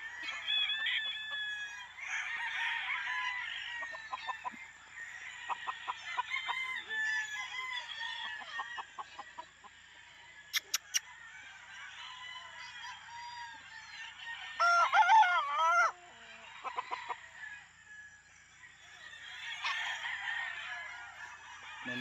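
Roosters crowing again and again, several birds overlapping, with one louder, nearer crow about fifteen seconds in. A few sharp clicks come near the middle.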